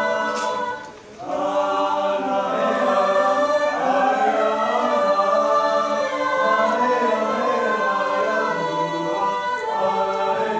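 Mixed choir of male and female voices singing a cappella, holding sustained chords that shift from one to the next, with a short break in the sound about a second in.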